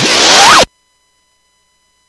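The tail of a radio station jingle: a loud whooshing noise sweep with a rising tone, cutting off abruptly about half a second in.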